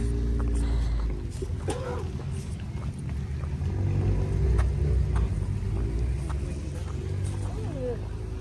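Low, uneven rumble of wind buffeting the microphone, with scattered light clicks of trekking-pole tips on a concrete path.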